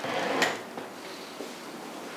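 A wooden dining chair is dragged briefly across the floor, one short scrape right at the start, then faint room sound.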